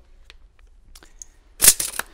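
Steel tape measure blade retracting into its case with a short clattering burst of clicks as it snaps home, about one and a half seconds in, after a few faint handling clicks.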